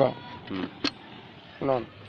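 A single sharp click as the metal lid of a hand-operated sesame planter's seed hopper is shut, between short bits of speech.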